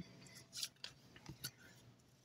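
Faint scraping and sliding of an oracle card being drawn from the deck and laid on the table, a few soft scratchy ticks about half a second to a second and a half in.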